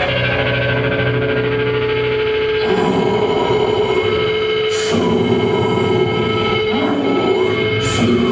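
Live rock band with distorted electric guitars holding sustained, droning chords. Crashing band hits come in about three seconds in, again near five seconds and near seven seconds.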